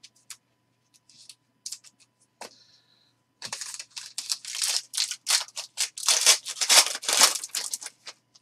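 Trading cards clicking and sliding against each other in the hands, then a foil wrapper of a Panini XR football card pack crinkling and tearing open. The crinkling starts about three and a half seconds in as a dense run of crackles and grows louder toward the end.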